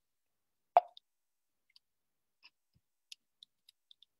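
Near silence on a video-call audio feed, broken by one short sharp sound about three-quarters of a second in and a few faint clicks near the end, as a computer mouse advances a presentation slide.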